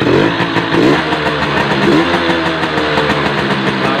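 Suzuki RC two-stroke motorcycle engine running, the throttle blipped so the revs rise and fall three times: right at the start, about a second in and about two seconds in, then settle to a steady run.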